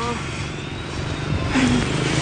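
Steady low background rumble, with a brief voice fragment at the very start and a hiss that rises in the second half.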